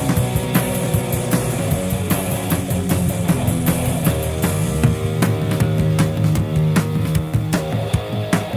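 Rock band playing live in an instrumental passage with no singing: a steady drum-kit beat with cymbals under electric guitars and bass, taken straight from the mixing desk.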